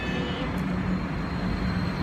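Steady low rumble and hum of city street traffic, a vehicle running close by.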